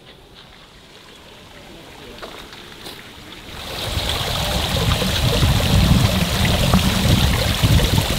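Small artificial waterfall running down a stacked-stone wall into a fish pond: a steady water noise that comes in about halfway through, after a quiet first half.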